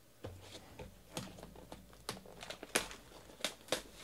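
Hands handling sealed trading-card packs and a hobby box's plastic shrink-wrap, which is being torn off: a run of sharp crinkles and clicks, loudest a little under three seconds in and twice more near the end.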